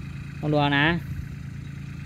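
Steady low engine rumble of a tractor working the field, under a short phrase of a man's speech.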